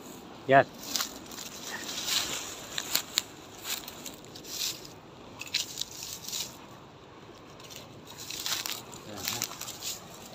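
Footsteps crunching and brushing through dry undergrowth: dry pine needles, grass and twigs crackling underfoot in irregular steps.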